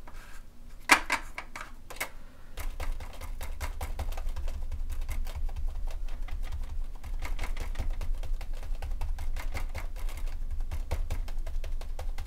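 A small sponge pounced rapidly on a plastic stencil over a journal page: a fast, even run of soft taps with a dull thud under them, starting about two and a half seconds in. Before that, a few separate clicks, the sharpest about a second in, as the sponge picks up paint from the palette.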